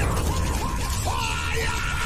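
Synthetic logo-intro sound effect: a run of short rising chirps over a low rumble, settling about a second in into a steady held tone.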